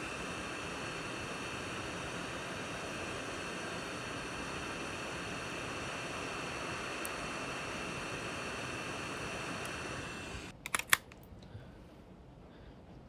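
Hot-air rework station blowing steadily on a USB flash drive's controller chip to desolder it: an even hiss with a faint whine. It cuts off about ten and a half seconds in, followed by a few short clicks.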